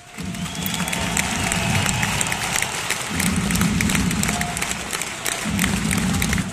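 Large arena crowd applauding and cheering. It breaks out suddenly and keeps up at a steady level.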